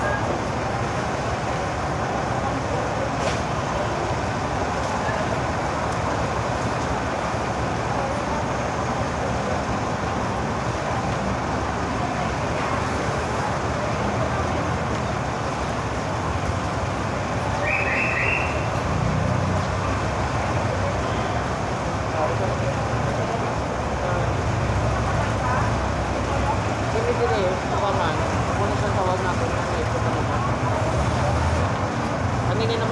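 Busy street ambience: a steady wash of road traffic with indistinct voices of people talking nearby.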